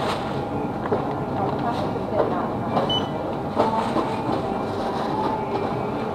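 Convenience-store checkout ambience: a steady background hum with plastic carrier bag rustling as goods are bagged at the counter, faint voices, and a short high beep about three seconds in.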